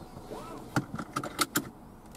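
A quick cluster of sharp clicks and taps inside a car's cabin, between about two thirds of a second and a second and a half in, as a hand works the dashboard controls.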